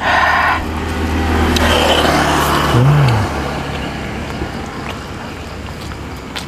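A motor vehicle passing on the road: a steady low engine hum with tyre and engine noise that swells about two seconds in and then fades away.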